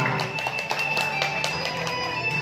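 Recorded music playing, with held tones over a light, regular beat.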